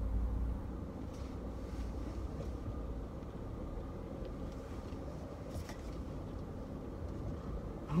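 Steady low rumble of a car heard from inside the cabin as it is driven: engine and road noise.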